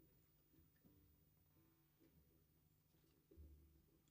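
Near silence: room tone, with a few faint small knocks and a brief low thump a little over three seconds in.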